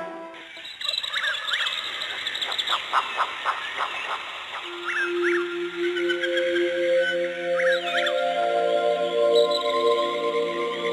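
Birdsong of repeated short chirps, with a quick run of clicking notes about three seconds in. Soft, held music tones come in under it about five seconds in.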